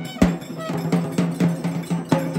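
Rhythmic percussion music: sharp, ringing strikes at an even beat of about three a second.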